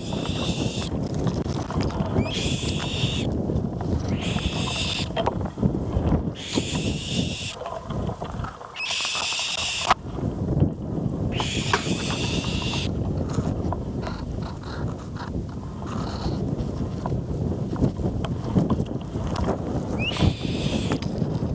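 Eaglets in the nest giving a series of high, drawn-out calls, each under a second and about two seconds apart, thinning out after the first dozen seconds. Under them runs a low rumble of wind and handling noise on the microphone.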